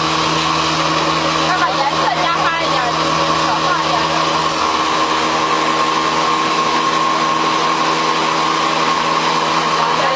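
A motor running steadily with a constant hum, with faint voices in the background during the first half.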